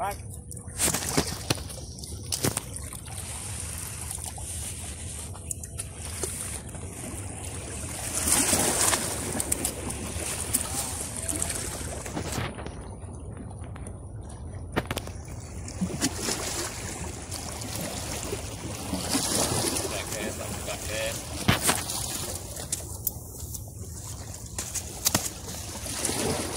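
Small waves sloshing against breakwater rocks, the water swelling louder twice, with a few sharp clicks.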